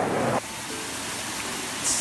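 Small ornamental waterfall pouring over rock into a pool: a steady, even rush of splashing water that starts abruptly about half a second in.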